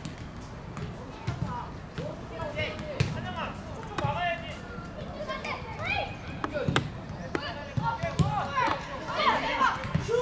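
Children's voices shouting and calling out on a football pitch, with several sharp thuds of the ball being kicked.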